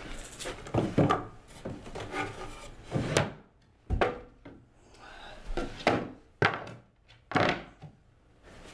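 A wooden drawer slid open and things inside it rummaged through: a run of wooden rubs and scrapes, then several sharp knocks.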